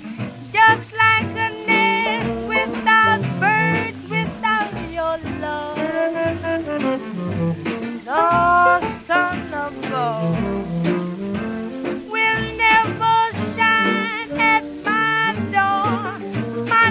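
Upbeat swing-style music with a steady bass line and held, sliding melody notes.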